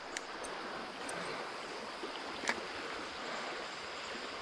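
Steady rushing of a small trout creek's flowing water, with one faint sharp click about two and a half seconds in.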